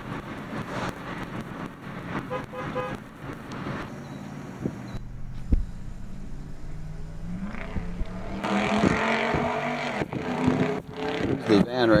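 A car engine idling, heard from inside the parked car as a steady low hum, with faint voices at times.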